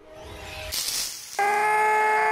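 A rising whoosh of film sound effects, with a hiss that peaks about a second in. About a second and a half in, a loud, steady siren-like blare of several held tones cuts in abruptly.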